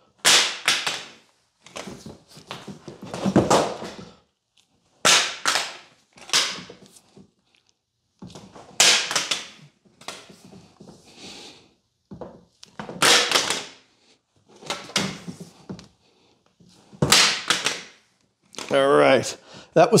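A plastic EV charging connector dropped from chest height onto a hard concrete floor five times, about every four seconds. Each drop is a sharp clack with a brief clatter as it settles. Between drops there is quieter handling noise as the cable is gathered up.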